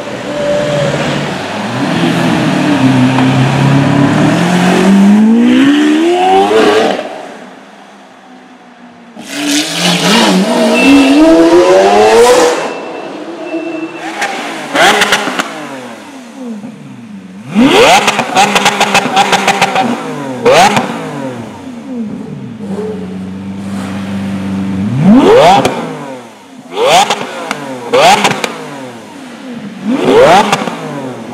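Lamborghini Aventador's V12 accelerating hard twice, its pitch climbing steadily through the revs each time. Later a stationary Aventador's V12 idles and is blipped in short, sharp revs, several followed by rapid crackles and pops from the exhaust.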